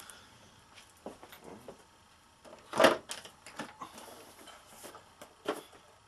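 Boxes being handled on a bench: a plastic die-set case put down and a cardboard box picked up. Scattered light knocks and rustles, with one sharper knock about three seconds in.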